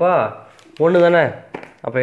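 A man speaking: two short phrases with a brief pause between them.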